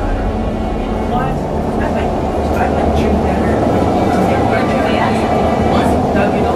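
REM automated light-metro train running along an elevated track, a steady rumble of wheels and traction motors from inside the car.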